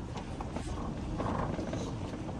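Light single-engine aircraft's piston engine running as the plane taxis, a steady low rumble.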